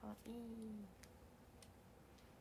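A young woman's voice says one short word, 'kawaii', then quiet room tone with a couple of faint clicks.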